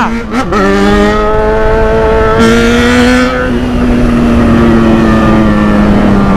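Yamaha XJ6's inline-four engine pulling the bike along in gear. Its pitch climbs over the first couple of seconds, a short rush of noise comes near the middle, then the revs ease off with a slowly falling pitch.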